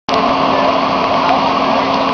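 Small engine running at a steady speed, with a constant low hum under it.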